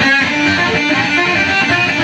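Solid-body electric guitar playing a fast blues-rock lead lick in the G position, a quick unbroken run of picked notes.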